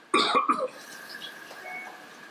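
A person coughing: one short, loud burst of two or three quick pulses just after the start.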